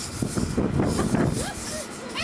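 Faint, indistinct voices of people talking in the background, over a low rumble of wind and handling noise on a camcorder microphone.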